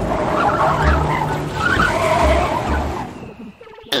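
Cartoon pickup truck skidding to a stop, tyres squealing over the engine noise, fading out about three seconds in.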